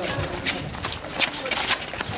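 Many people's footsteps on paved ground as a group jogs and shuffles about, a quick, irregular run of footfalls, with voices chattering among them.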